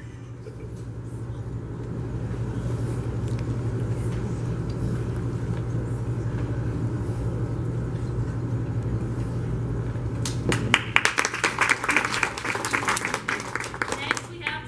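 Indistinct audience murmur over a steady low hum, slowly growing louder; about ten and a half seconds in, the audience breaks into applause.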